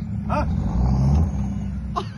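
Engine of an off-road 4x4 working under load as the vehicle crawls, tilted, out of a deep rut, a steady low drone that swells slightly around the middle.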